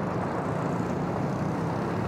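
Road traffic passing close by: motorcycle and car engines running as they go past, with a steady low engine note over tyre and road noise.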